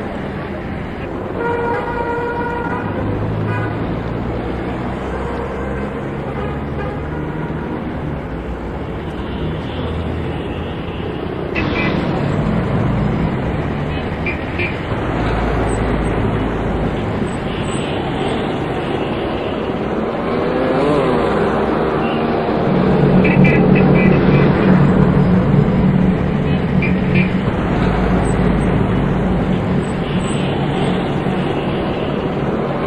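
Street traffic: cars and motorbikes passing, with horns tooting now and then.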